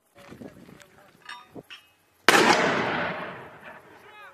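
A mortar firing: a single sharp blast about two and a half seconds in, with a long rolling echo that dies away over about a second and a half. Faint clicks and rustles of handling come before it.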